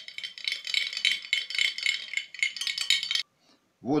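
A metal utensil rapidly beating egg white and milk in a glass dish, a fast run of clinks and scrapes against the glass that stops suddenly about three seconds in.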